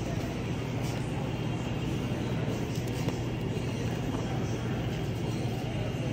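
Steady low hum and rumble of supermarket background noise, with a few faint clicks.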